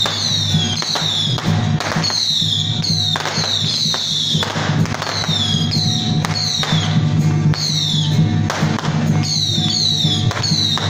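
Traditional temple-procession music: metal percussion, gongs or cymbals, struck again and again in a loose repeating pattern, each strike ringing with a falling pitch, over a steady low hum.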